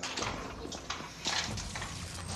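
A handful of irregular knocks and rustles: a room door being pushed open, with footsteps and the phone rubbing against clothing.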